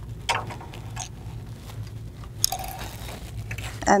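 Light clicks and rustles of a camera cable being pushed and worked into the plastic cable channel of a longarm quilting machine, with a sharper click about two and a half seconds in, over a steady low hum.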